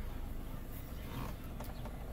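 Steady low hum inside the cabin of an idling 2015 Ford Edge SEL, from the engine and climate-control fan, with a few faint taps as the touchscreen temperature is raised.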